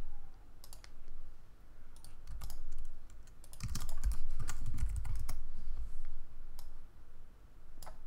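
Computer keyboard keys pressed one at a time for shortcuts rather than in continuous typing: scattered irregular clicks, some clustered, with a few dull low thuds in the middle.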